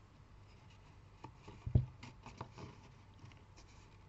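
Hands handling and pressing cardstock on a small paper gift box: light paper rustling and small taps, with one soft thump a little under two seconds in.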